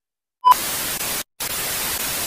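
Static sound effect over an edit: a short beep, then an even hiss of white-noise static that switches on and off abruptly, with a brief dropout to silence a little over a second in.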